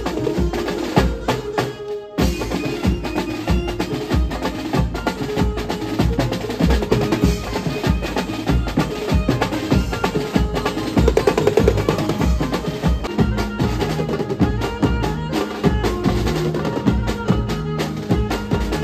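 Live Mumbai banjo party band music: several drummers playing a fast beat with sticks on snare drums, toms and cymbals, with a melody line held over the drums. The band breaks off for a moment about two seconds in, then comes straight back in.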